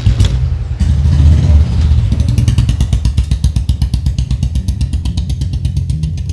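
Motorcycle engine revving loudly, surging again about a second in, then settling into a rapid, even pulsing beat as the bike pulls away.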